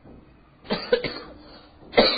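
A person coughing: a short double cough a little over half a second in, then another cough at the very end.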